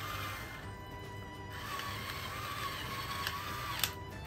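A pepper mill grinding coarse black pepper in two spells with a short pause between them, and a sharp click near the end, over background music.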